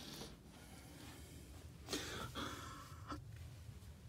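Faint room tone with a few soft breath-like puffs close to the phone's microphone, the clearest about two seconds in, and a small click a second later as the phone is handled.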